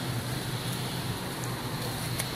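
Steady low hum under an even background noise, with no distinct events.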